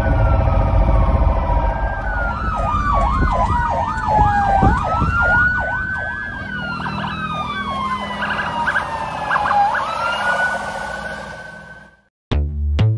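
Ambulance electronic siren: a slow wail falling and rising in pitch, broken twice by a fast yelp of about three sweeps a second, over engine and road rumble. It fades out near the end.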